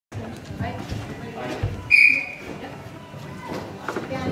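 A single short, steady whistle blast about two seconds in, over scattered voices in a large hall.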